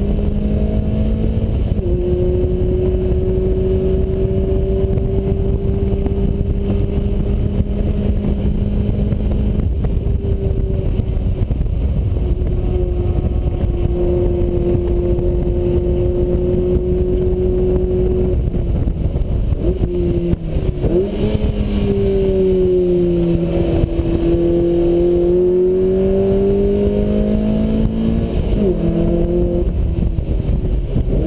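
Lotus Elise S1's 1.8-litre Rover K-series four-cylinder engine running hard, heard from the open cockpit with steady wind rush. Its pitch holds nearly steady through long pulls, drops at a gear change near the start, dips and wavers about two-thirds in as the revs come down, then climbs again before another shift near the end.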